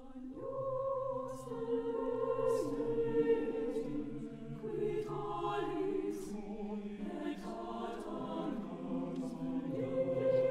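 Mixed chamber choir singing slow, sustained chords, coming in about half a second in and swelling, with soft sibilant consonants from the text.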